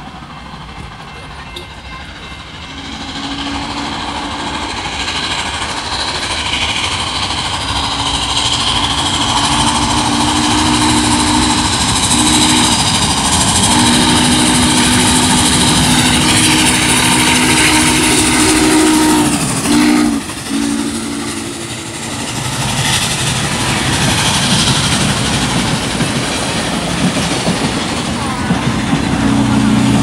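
Norfolk & Western 611 steam locomotive approaching and passing with its train: the steam whistle sounds a chord in several long blasts, a short one a few seconds in, then a long series from about eight to twenty-one seconds, and another starting near the end. Under it the rumble of the train grows steadily louder and, toward the end, the passenger cars roll by on the rails.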